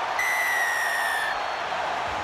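A referee's whistle blows one long blast of about a second, falling slightly in pitch, over the steady noise of a stadium crowd: the full-time whistle with the match clock past 80 minutes.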